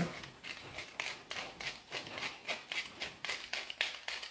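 Tall wooden pepper mill being twisted by hand, its grinder cracking peppercorns in a quick, even run of short clicks, about four or five a second.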